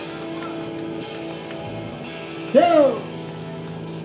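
Steady held tones from the band's amplified instruments, an electric guitar left ringing through its amp between songs. About two and a half seconds in comes one short, loud vocal exclamation.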